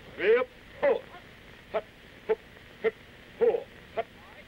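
A drill sergeant calls marching cadence: short, shouted one-syllable counts, about two a second at a steady marching tempo.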